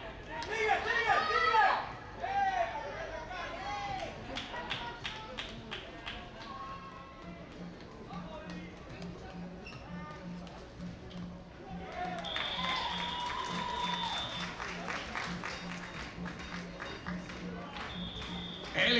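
Sports-field ambience: loud shouting voices in the first couple of seconds, then a run of short sharp clicks, over background music with a steady pulsing beat that starts about seven seconds in.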